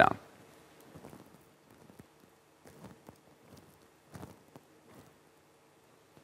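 Near-quiet room tone with a faint steady hum and a few soft, scattered clicks and knocks.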